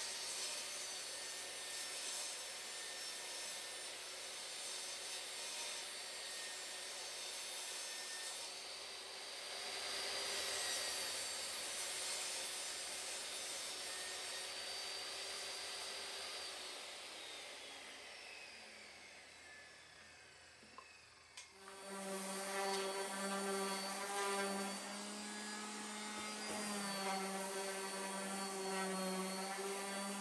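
Jobsite table saw running and cutting plywood, then winding down with a falling pitch after it is switched off. About twenty seconds in, a random orbital sander starts up and runs steadily on a plywood panel.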